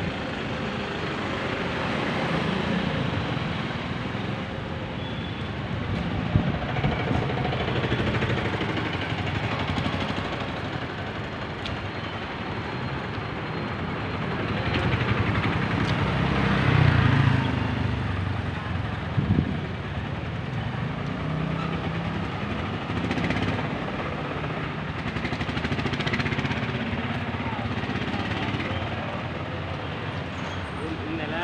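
Street traffic in a busy town lane: cars, auto-rickshaws and motorcycles passing at low speed. It swells and fades as vehicles go by, loudest when one passes close a little past the middle.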